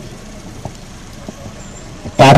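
Steady low outdoor background noise in a pause between speech, a rumble like distant road traffic, with two faint ticks.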